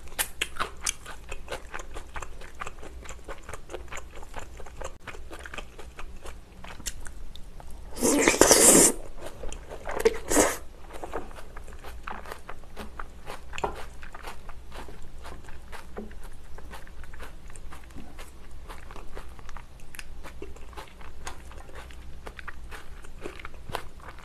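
Close-miked mouth sounds of someone chewing a large mouthful of cream-sauce noodle tteokbokki with chopped cheongyang chili: quick wet clicks and smacks throughout, with a louder rushing noise about eight seconds in and a shorter one near ten seconds.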